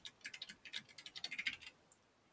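Computer keyboard typing: a quick, irregular run of faint keystrokes that stops shortly before the end.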